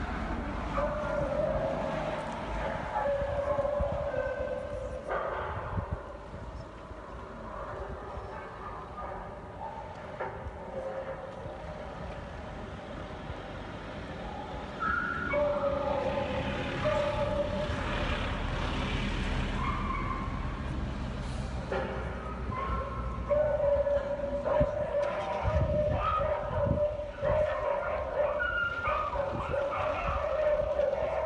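A chorus of dogs, beagles in the breeding kennels, howling and barking together in long, overlapping held howls. The howls are louder in the second half, over a low rumble of traffic.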